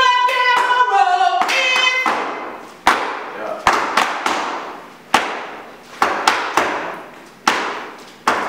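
Step routine: sharp hand claps and foot stomps on a hard floor in an irregular rhythm, each strike ringing on in a reverberant hall. A woman's voice sings out a held, pitched line over the first couple of seconds.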